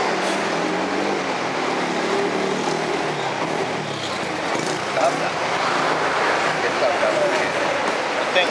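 Street traffic: a motor vehicle passing close by, its engine note falling over the first three seconds, over a steady traffic hum.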